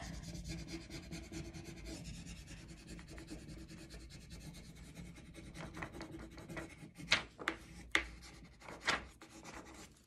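A burnishing tool rubbing back and forth over the plastic backing sheet of a rub-on furniture transfer, pressing the design down so its lifting edges stick to the painted surface. The rub is steady, with a few sharper, louder strokes near the end.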